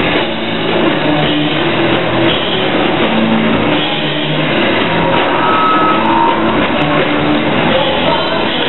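Live rock band playing loud, with electric guitar and drums.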